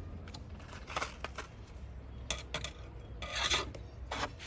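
A small metal eye hook being screwed into a wooden fence board, turned by a screwdriver shaft passed through its eye: a few short scrapes and clicks, then a longer scrape near the end.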